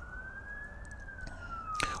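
A siren's slow wail: a single tone rising in pitch, then turning and falling a little before halfway through.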